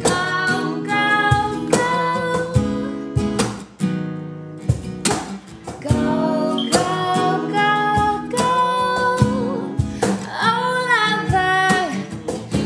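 Acoustic guitar strummed, with cajon hits keeping a steady beat under singing. A sweeping vocal run comes near the end.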